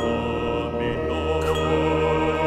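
Microtonal chamber music for chanting baritone voices and a mixed wind, string and percussion ensemble: many held tones over a steady low drone, with a short percussion stroke about one and a half seconds in.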